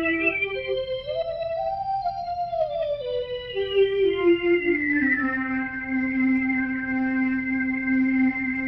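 NSynth WaveNet autoencoder resynthesis of a sung vocal scale: a pitched tone with many overtones that steps up and back down, gliding smoothly between notes instead of jumping. It then holds the low last note for several seconds. There are a lot of extra harmonics and a musical distortion related to the note, the model's best approximation of note boundaries it never saw in training.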